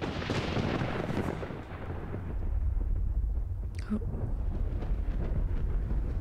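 Dramatic film sound design: a sudden heavy boom right at the start that dies away over a second or so, followed by a deep low rumble.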